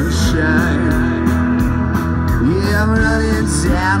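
A live rock band playing: electric guitars, keyboard, bass and drums with a steady beat, and a melody line bending up and down in pitch in the second half. A sung word comes in right at the end.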